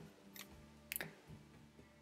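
Faint music playing back from a cheap USB MP3 decoder module through an amplifier, after a number key on its remote has jumped it to the last track. Two faint clicks stand out, about half a second and one second in.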